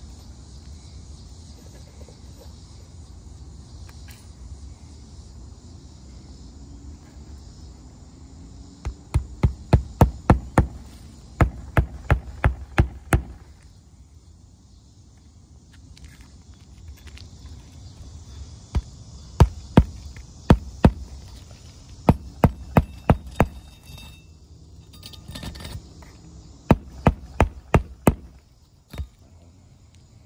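Hammer driving roofing nails into asphalt shingles: runs of five or six sharp strikes, about three a second, repeated several times with short pauses between.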